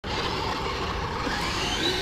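1/10 scale electric RC crawler truck driving on pavement: a steady rushing noise, with a faint motor whine rising in pitch from about a second in as it speeds up.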